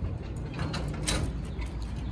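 A metal chain dog leash rattling and clinking in short clicks as the dogs walk, over a low steady outdoor rumble.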